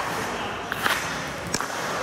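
A few sharp clacks of hockey sticks and pucks on the ice: two close together just under a second in, and another about a second and a half in.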